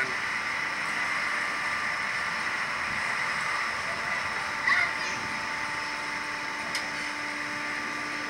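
Steady machine hum and hiss with several steady whining tones, and a low tone growing stronger about halfway through. A short vocal sound comes about five seconds in, and a single click just before the end.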